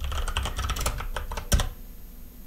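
Computer keyboard typing: a quick run of key clicks, with one louder click about one and a half seconds in, after which the typing stops.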